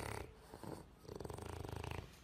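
A French bulldog breathing noisily: faint, with a rapid fluttering rattle in the second half.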